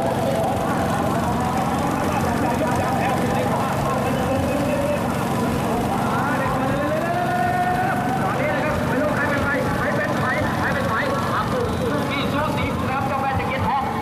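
A race announcer's voice talking continuously and rising in pitch, over steady crowd noise.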